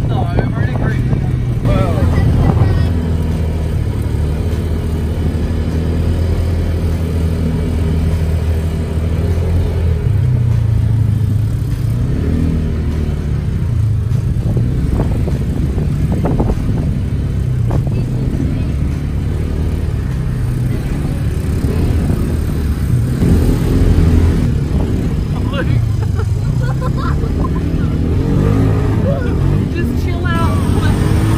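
Engine of a side-by-side ATV buggy running under way, heard from on board, its pitch rising and falling as it speeds up and eases off.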